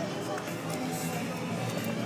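Steady street background of faint music and distant voices, with no distinct event.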